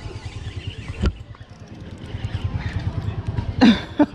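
A Major Craft Ceana 2500 HG spinning reel being cranked fast against a hooked fish, a rapid low rattle that runs on evenly. There is a sharp knock about a second in and a short cough-like grunt near the end.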